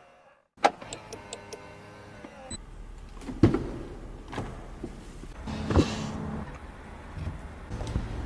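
Car door and cabin sounds from a Land Rover Defender: a sharp ringing hit about half a second in, then a run of clicks and thuds, the loudest about three and a half seconds and six seconds in.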